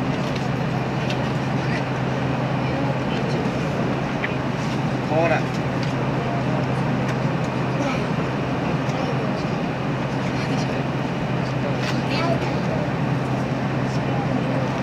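Steady interior running noise of a JR Hokkaido 789 series electric train at speed: an even low rumble of wheels on rail and car body, with a few brief faint squeals, one slightly louder about five seconds in.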